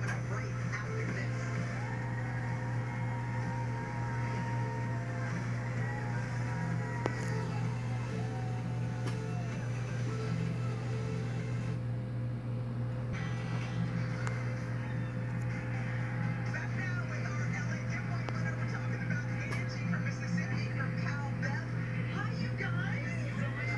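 Television broadcast audio heard from a wall-mounted TV in a small room: talk-show speech and music, over a steady low hum.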